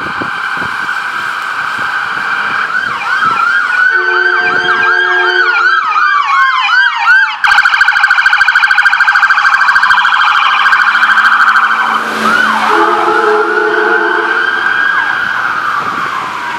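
Ambulance's electronic siren: a rising and falling wail, then a fast yelp, then a very fast warble, then back to the wail, loud as the vehicle passes. Short horn blasts sound twice, once shortly after the yelp begins and again as the wail returns.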